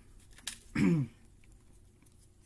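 A man clears his throat once, with a falling voiced sound just under a second in, preceded by a short click.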